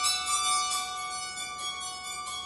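Bowed psaltery played solo with a bow: a slow melody of sustained, ringing notes that overlap one another.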